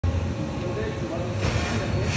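DMG Mori mill-turn machine running inside its enclosure: a steady low hum from the spindle and axis drives. A rush of hiss comes in about a second and a half in, as the milling head moves toward the workpiece.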